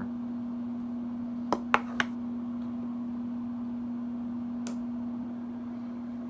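A steady low background hum, with three quick clicks about a second and a half to two seconds in and one fainter click near the end.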